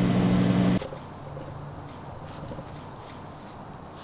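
Homemade microwave cannon's transformer and magnetron running with a loud, steady low mains hum, which cuts off suddenly with a click less than a second in as it is switched off. Quiet outdoor background follows.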